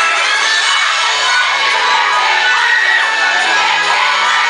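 A concert crowd cheering and screaming, many high-pitched voices at once, loud and continuous.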